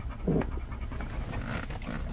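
A dog panting with its mouth open inside a car cabin, over the car's low steady hum.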